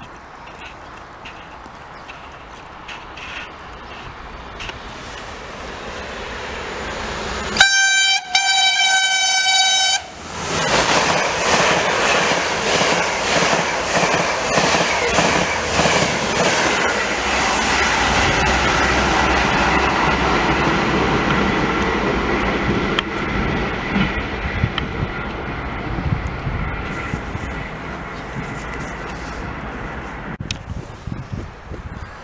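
A TrainOSE passenger train approaching and passing through the station at speed. Its rumble grows, it sounds its horn about eight seconds in (a short blast, then a longer one), and then its wheels run loudly past with steady clicking over the rail joints, slowly easing near the end.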